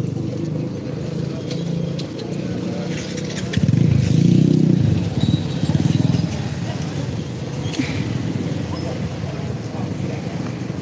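Outdoor street noise at a protest: a steady low rumble that swells for a couple of seconds about three and a half seconds in, with a few sharp clicks and indistinct voices.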